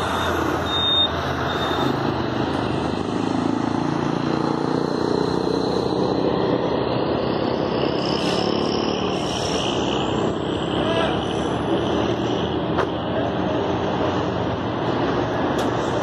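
Steady highway traffic of trucks and cars passing at speed. A heavy truck's engine drone swells and fades through the middle.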